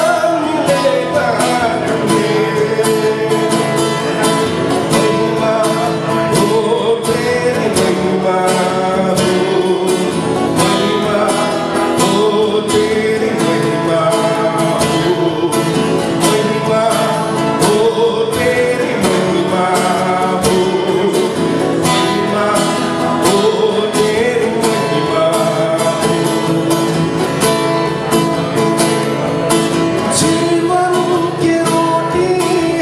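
A man singing a Hindi Christian worship song to his own acoustic guitar, strummed in a steady rhythm under the voice.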